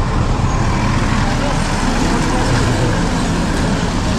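Steady traffic noise from cars, buses and trucks idling and creeping in a jammed queue: a dense, even rumble and hiss.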